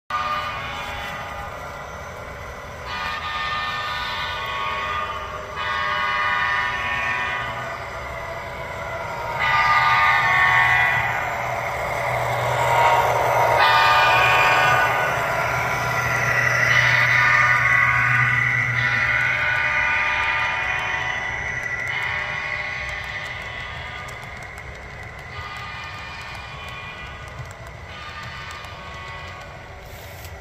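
Model diesel locomotive's sound system sounding its horn in a string of blasts a few seconds each, the longest in the middle and fading toward the end, over a low steady engine hum.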